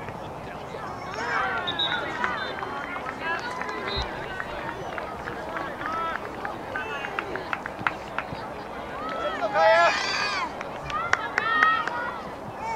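Indistinct shouts and calls from people around a soccer field, several voices overlapping, with one loud high-pitched shout about ten seconds in. A few short knocks sound among the voices.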